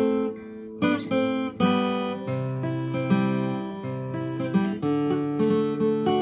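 Acoustic guitar picking a mugithi riff: single notes and two-note shapes plucked one after another and left to ring, with three strong plucks in the first two seconds.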